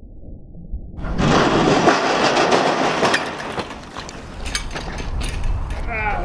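A bicycle crash in loose dirt: after a muffled, dull first second, a loud gritty rush of scraping dirt and gravel with clattering sets in, fades over the next few seconds, and leaves scattered ticks of falling grit. A voice cries out briefly at the very end.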